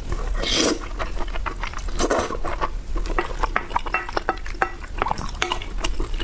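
Close-miked eating sounds: a wooden spoon scraping and scooping sauce-soaked rice on a ceramic plate, with wet chewing and a quick run of small mouth clicks in the second half.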